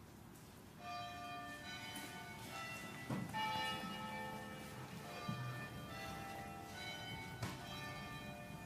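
Church bells ringing, several notes of different pitch struck one after another, each ringing on over the next. A couple of dull knocks about three and five seconds in.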